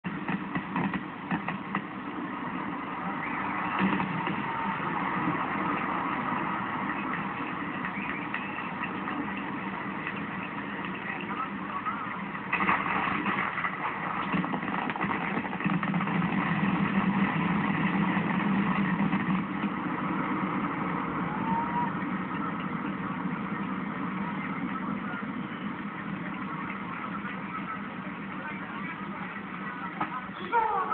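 Live fireworks display heard through a window: a continuous, dense barrage of bursts, with sharper bursts about four seconds in and again about twelve seconds in.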